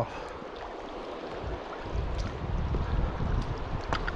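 Flowing river water with wind buffeting the microphone, the low rumble growing louder about halfway through.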